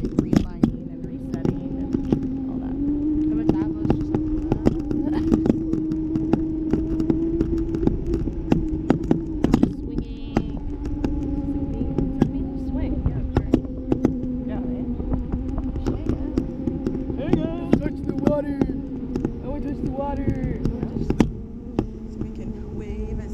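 Wind buffeting the microphone of a camera on a parasail rig in flight, with many sharp knocks and a steady hum that wavers a little in pitch.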